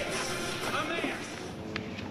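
A man speaking at a podium microphone, with music underneath.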